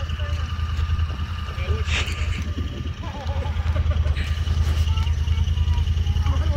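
An off-road side-by-side's engine idling, a steady low pulse that dips slightly a couple of seconds in, with a faint steady high whine above it. People talk in the background.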